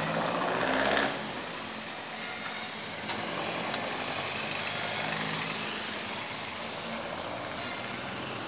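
Motor vehicle engine and street traffic noise, louder for the first second; a motorcycle passes close by around the middle, its engine briefly swelling.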